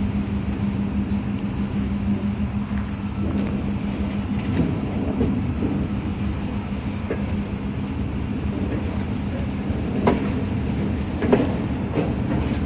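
Norfolk Southern EMD GP38-2 diesel locomotive running with a steady low hum as it moves freight cars. There are a few sharp clanks and wheel clicks from the rolling cars, the loudest two near the end.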